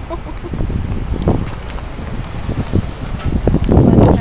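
Wind buffeting the handheld camera's microphone as a low, gusting rumble, with a few short indistinct sounds, the loudest near the end.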